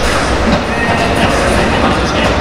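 Loud, steady crowd noise filling a roofed baseball stadium, with music from the cheering sections mixed in.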